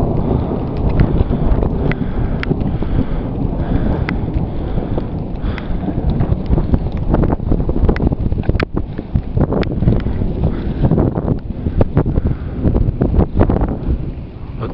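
Strong wind buffeting the camera microphone: a continuous low rumble broken by frequent crackles and pops.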